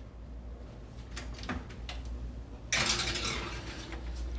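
Light taps and clinks of a paper towel dabbing oil onto wonton wrappers on a metal baking sheet. Nearly three seconds in, a louder steady rushing noise with a low hum sets in as the baking sheet is slid onto the rack of the open oven.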